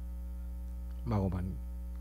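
Steady electrical mains hum, a constant low buzz, with a brief snatch of a man's voice about a second in.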